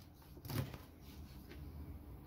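Chef's knife slicing through salted mackerel, with one short knock on the plastic cutting board about half a second in, then faint cutting.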